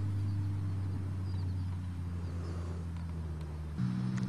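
An engine running steadily at a constant low note, stepping up slightly in pitch near the end.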